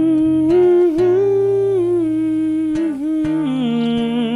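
A man humming a wordless melody in long held notes over his own acoustic guitar, the pitch stepping up and down and settling lower near the end.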